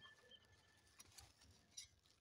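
Near silence: faint outdoor ambience with a thin steady tone that fades out about halfway through and a few faint ticks.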